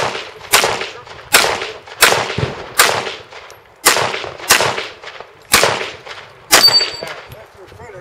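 Handgun shots fired one at a time, about eight in all, spaced roughly half a second to a second apart, each trailing off in a short echo. A brief high ring comes right after the last shot.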